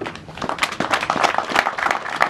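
Audience applauding: a dense patter of many hands clapping that builds up about half a second in.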